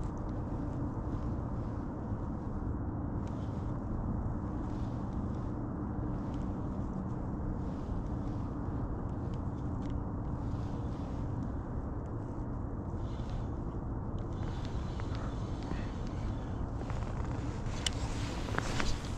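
Old Town ePDL kayak's electric drive motor running, a steady low rumble with a faint hum.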